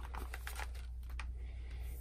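Faint clicks and light rattling of a plastic power strip and its plugged-in power cords as they are handled, over a steady low hum.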